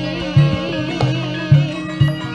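Javanese gamelan music: a girl's sung line held with wide vibrato over struck bronze and drum notes, with three heavy low strokes about half a second apart.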